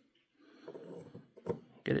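Faint rubbing of a ferrite rod sliding in a coil former as it is moved to tune the coil's inductance, then one short knock.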